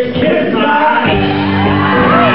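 A live blues-rock band playing loudly, with electric guitars and keyboard, and a voice singing over it. A long sliding note rises about a second and a half in and is held.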